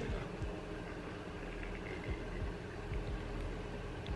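Steady low background hum with a few faint, soft ticks from a metal probe working under a thick toenail.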